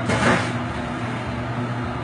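A steady low machine hum with even background noise, after a brief rushing burst in the first half-second.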